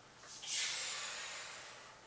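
A woman's long, forceful exhale through the mouth during a Pilates roll-up, rising sharply about half a second in and fading away over the next second and a half.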